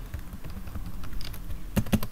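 ThinkPad laptop keyboard keys clicking: a few light taps, then a quick run of several louder presses near the end as Ctrl+C is hit repeatedly.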